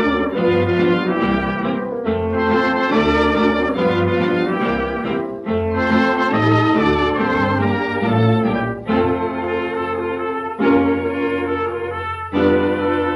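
Early-1930s dance orchestra on a 78 rpm record transfer, playing an instrumental fox-trot passage with a steady bass beat and no vocal.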